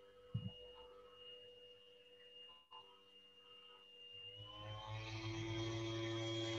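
Faint steady tones held at several pitches at once, growing louder about four seconds in, with a soft knock about half a second in.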